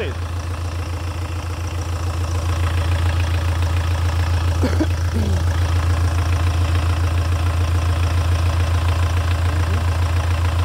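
A Kia Sorento's 2.5-litre four-cylinder common-rail turbodiesel idling steadily, with an even diesel pulse. It has only just been started for the first time after being fitted as a used replacement engine. It gets a little louder over the first few seconds, then holds steady.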